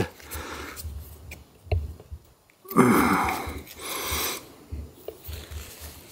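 MC4 solar cable connector being pushed together by hand, giving a few small, faint plastic clicks as it snaps into place. Two breaths through the nose near the middle are as loud as the clicks.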